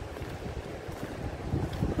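Wind blowing across a phone's microphone: a steady, low noise.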